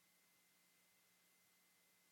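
Near silence during silent meditation: faint steady hiss, with a faint steady hum and a thin high tone.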